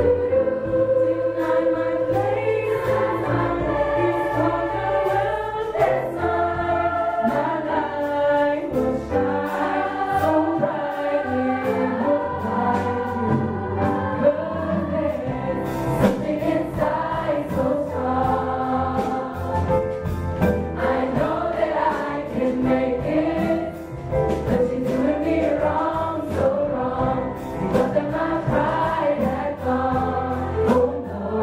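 A large high school girls' choir singing in several parts, accompanied by a band with drum kit and piano.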